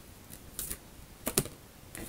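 Oracle cards being handled as the next card is drawn from the deck: three or four light, sharp clicks and snaps, the loudest a little past halfway.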